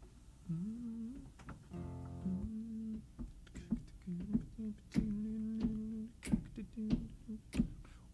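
Quiet, scattered acoustic guitar plucks with a few soft hummed notes that glide and hold briefly, players finding their notes before a song starts.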